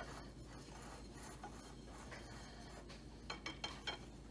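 Wire whisk stirring a dry mix of flour, yeast and salt in a bowl: a faint soft scratching, with a few light clicks a little after three seconds in as the wires knock the bowl's side.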